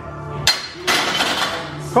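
A sharp metal clank as a loaded barbell is racked onto the steel uprights of a bench press, followed by a longer burst of noise, over background music.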